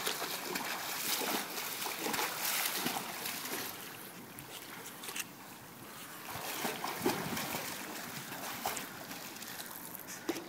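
Swimming-pool water splashing and lapping as a toddler paddles and an adult swims close by. The splashing comes in uneven spells, busiest in the first few seconds and again around seven seconds in.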